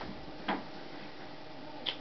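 Three brief faint clicks from objects being handled: one at the start, one about half a second in and one near the end, over quiet steady room noise.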